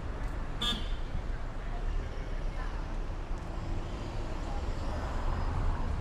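City street traffic at an intersection: cars passing and turning close by, with a steady low rumble. About half a second in comes one short, high-pitched toot.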